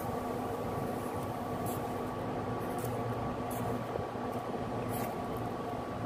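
Steady hum and hiss from a pot of chicken in broth heating on an electric cooktop, with a few faint ticks.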